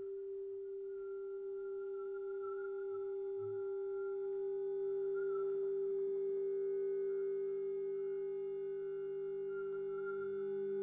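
A sustained electronic drone from the piece's live electronics: one steady held tone with only faint overtones, and a quieter, lower tone joining beneath it a couple of seconds in.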